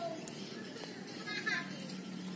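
Children's voices in the background, with a short high-pitched burst of a child's voice about one and a half seconds in, over a steady low hum.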